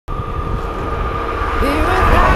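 Low rumble of an approaching electric passenger train at a level crossing, with a steady high tone over it. About one and a half seconds in, music begins with rising, gliding notes.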